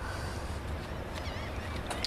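Outdoor background: a steady low rumble with a few short, wavering bird calls, about a second in and again near the end.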